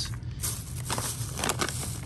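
Thin plastic bags crinkling and crackling in quick, irregular crackles as they are handled and pressed down into a soft-sided lunchbox cooler.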